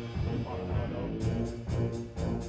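Wind orchestra playing: short low notes, then, about a second in, a passage with a quick, even percussion beat of about four strokes a second over the band.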